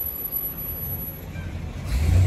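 Steady low rumble of street traffic at an urban intersection, with no speech over it.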